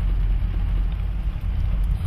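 Steady low engine and road rumble inside the cabin of a moving vehicle.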